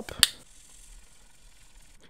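A single sharp plastic click of a marker cap, about a quarter second in, followed by faint quiet handling.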